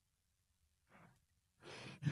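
Near silence, with a faint breath about a second in.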